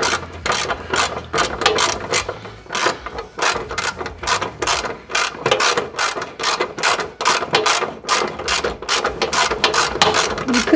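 Ratchet wrench clicking in quick runs with short pauses between strokes as it unscrews the last bolt holding a Lexus GX470 running board to the frame.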